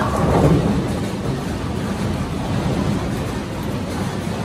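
Bowling alley din: a steady low rumble of bowling balls rolling down the lanes, with a louder swell of pins clattering just after the start.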